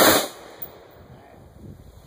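M16 rifle firing on full automatic, a long rapid burst that stops about a quarter second in. A single faint click follows.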